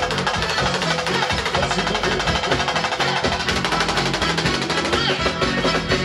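Pagodão band music driven by dense, rapid drum percussion, with a full band playing.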